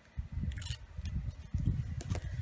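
A hand pressing and rubbing along washi tape on a paper planner page to smooth it down: a string of dull, low rubs and soft thuds through the desk, with a few light clicks.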